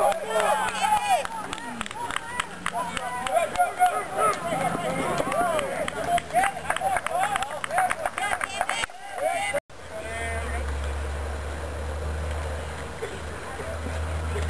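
Baseball spectators shouting and calling out over one another, with scattered sharp claps or knocks. After a sudden cut about ten seconds in, the voices drop away and a steady low rumble takes over.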